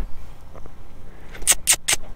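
Three quick sniffs close to the microphone, about one and a half seconds in, over a low steady background rumble.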